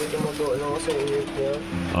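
Speech: a voice talking more quietly than the main speaker, over a steady low hum.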